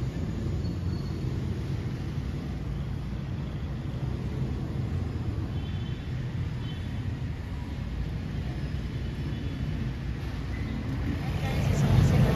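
Street traffic: a steady low rumble of passing cars and motorbikes coming in through open windows, getting louder near the end.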